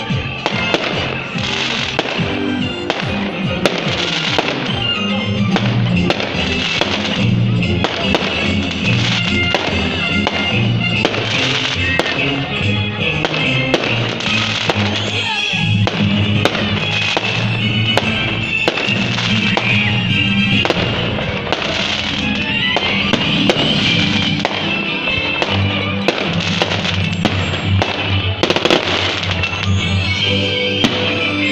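Fireworks going off in the sky, with many sharp bangs and crackles, over music with a stepping bass line.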